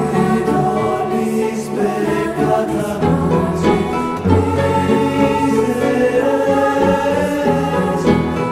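Many voices singing a slow worship song together, with long held notes.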